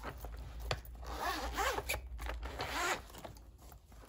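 Zip of a fabric zip-around pencil case being pulled open, a run of rasping zipper strokes that dies down near the end as the case lies open.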